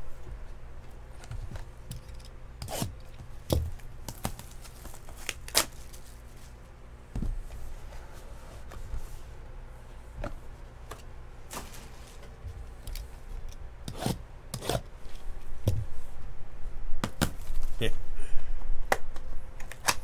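Cardboard trading-card boxes being handled and set down on a table, giving a scattering of short taps and knocks. Near the end comes denser rustling and scraping as the pack's box is worked open.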